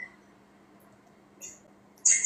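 Near silence with a faint steady hum, and one faint, short high-pitched sound about one and a half seconds in.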